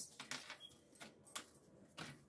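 Tarot cards being handled: a few faint, short clicks and taps of card stock against card.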